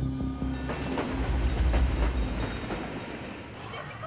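Streetcar running on its rails: a low rumble with some wheel clatter, easing off toward the end.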